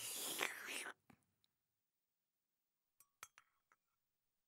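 A breathy, whisper-like rush of about a second, then near the end a few short clinks of wooden chopsticks against a ceramic bowl.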